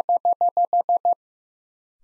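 Morse code tone near 700 Hz keyed as eight short dits in a little over a second: the error prosign HH ("correction"), sent at 15 wpm.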